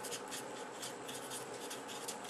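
Faint writing by hand: a quick run of short scratching strokes.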